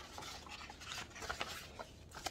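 A stack of printed paper sheets being turned over and lifted, a run of short dry rustles and crackles.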